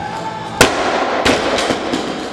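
A loaded barbell with rubber bumper plates dropped from overhead onto the gym floor: one loud crash about half a second in, then several smaller bounces as it settles.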